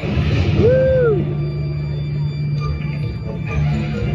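Halloween parade music playing over loudspeakers, swelling loudly at the start, with a steady bass and a single tone sliding up and back down about a second in. Crowd chatter runs underneath.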